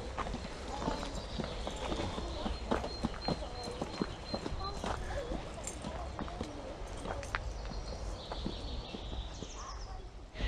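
Footsteps climbing timber-edged earth steps: a run of irregular knocks and scuffs, with voices in the background.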